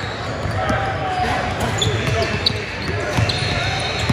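Live gym sound from a large indoor hall: basketballs bouncing on a hardwood court in scattered thuds, with a few short high sneaker squeaks over the chatter of many voices.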